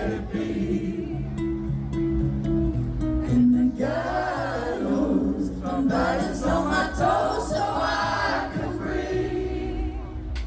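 Live acoustic performance: held notes from a string quartet and acoustic guitar, with several voices singing from about four seconds in.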